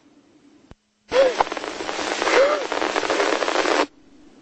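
Police two-way radio transmission: a click, then about a second in a loud burst of hissing static with a faint, garbled voice in it, cutting off sharply near the end.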